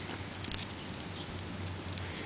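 English bulldog puppy making small vocal noises as she rolls and wriggles on her back, over a steady low hum, with one sharp click about half a second in.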